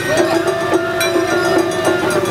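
Festival float passing with its hayashi band playing: a long held whistling note over a steady lower tone, with light metallic strikes about four times a second.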